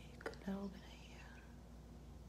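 A woman's quiet murmur: a small click, a short voiced syllable about half a second in, then a faint whisper.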